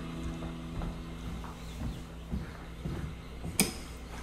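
A quiet room with a few faint soft knocks and one sharp click near the end.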